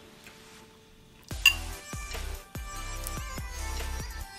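A quiet first second, then a sharp clink about a second in, typical of a metal spoon against a ceramic bowl. Background music with a steady beat follows.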